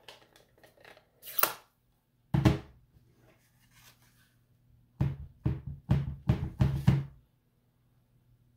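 A plastic Stampin' Pad ink pad clicks open, followed by a thump. Then a clear stamp on an acrylic block is tapped onto the ink pad about six times in quick succession to ink it.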